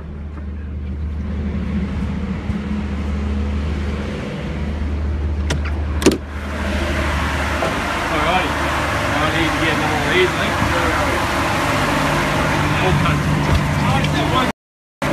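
Steady low mechanical hum, with a sharp knock about six seconds in, after which a louder, even rushing noise with faint voices takes over.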